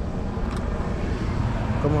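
A motor vehicle passing by: a steady rushing noise over a low rumble, with a voice starting near the end.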